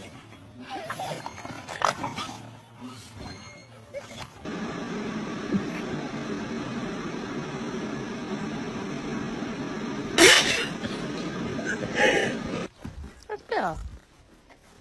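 A few short dog barks and yelps, then a small electric fan running steadily for about eight seconds, broken by two loud sudden sounds near its end.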